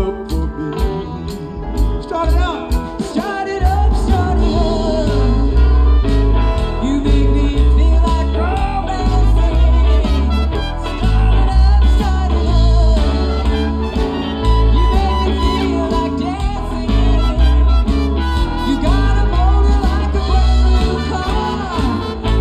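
A live blues band with a horn section playing an instrumental passage: drums, bass, electric guitar and keyboard. The playing is sparse for the first few seconds, then the full band comes back in with a steady heavy beat about four seconds in.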